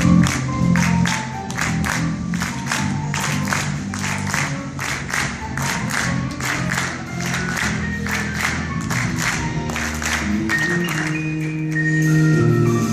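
Live band music heard from a theatre balcony: sustained keyboard and bass notes under a steady beat of sharp hits, about three a second. The deep bass thins out about two seconds in and comes back in full near the end.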